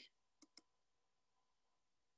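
Near silence broken by two faint computer mouse clicks in quick succession about half a second in.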